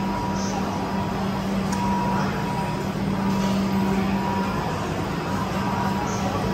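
Steady indoor food-court background noise dominated by a continuous low mechanical hum, with a fainter high tone that comes and goes and a few small clicks.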